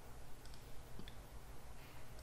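A few faint computer mouse clicks over a steady low background hum.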